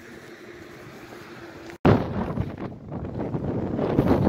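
A car's steady, quiet running hum with a faint low tone, which cuts off abruptly a little under two seconds in. Loud, gusty wind then buffets the microphone.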